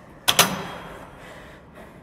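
Leg press machine giving one sharp metallic clunk, a quick double knock that fades out, as the footplate is pushed away and the weight stack lifts.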